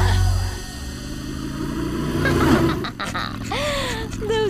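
Cartoon soundtrack: background music ends about half a second in, giving way to quieter sound effects, with a short gliding vocal sound near the end.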